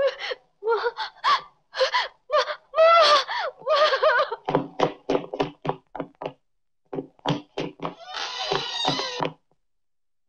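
A woman gasping and crying out in panic during a struggle, in broken pitched cries and then a rapid run of short gasps, ending in one longer cry near the end.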